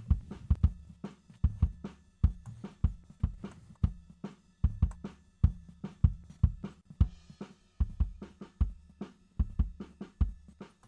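Recorded drum kit playing back from a mixing session: kick drum, snare and cymbals in a steady beat, a few hits a second.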